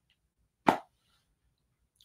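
A single short mouth pop, like lips parting, about two-thirds of a second in; otherwise silence.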